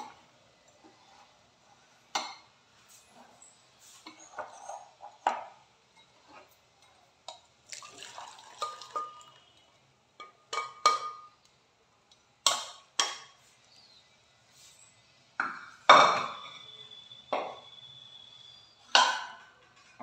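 Steel pots and kitchen utensils clanking and knocking on and off, several strikes ringing briefly, the loudest near the end. A short spell of poured water in the middle, as the boiled mushrooms are drained.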